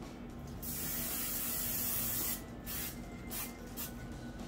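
Aerosol cooking-oil spray being sprayed onto a metal sheet pan: one long hiss of nearly two seconds, then three or four short spurts.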